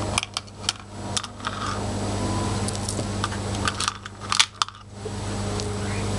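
Irregular light clicks and clinks of small metal earring hooks and polymer clay charms being handled over a plastic organizer box, with a sharper click about four and a half seconds in, over a low steady hum.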